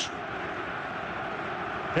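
Steady stadium crowd ambience from a football TV broadcast's pitch-side sound, an even wash of noise with no distinct calls or chants.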